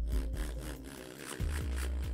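Background electronic music with a deep, steady bass and a beat. The bass drops away briefly about a second in.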